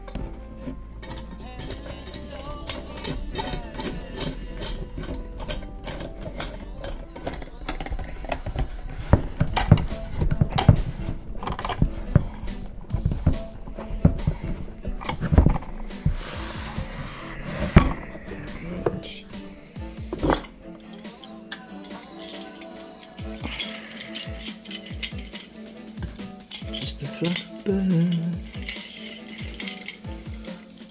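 Background music, with metal clinks and knocks scattered through it as clamps are handled and their screws tightened onto wooden cauls.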